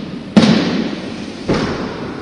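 Jumping stilts landing on a hard gym floor: two heavy thuds about a second apart, each echoing around the hall.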